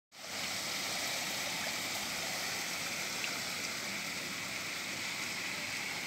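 Steady rushing of water, an even hiss that stays level throughout.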